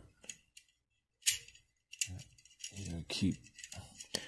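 Sharp metal clicks and light rattling from a Wilson Combat 1911 magazine as its spring is wiggled out of the steel magazine body, with one loud click about a second in.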